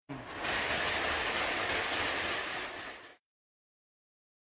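A hissing rush of noise, about three seconds long, that starts and cuts off abruptly, with a faint fluttering in the top.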